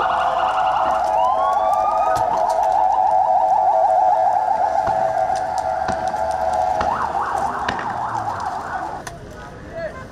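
Ambulance siren sounding loud and close in a fast warbling tone that changes pattern about seven seconds in and stops about nine seconds in. A few faint pops sound behind it.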